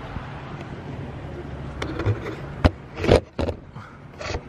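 Camera being handled and set up: a steady low background hum, with a handful of sharp knocks and rustles in the second half, the loudest about three seconds in.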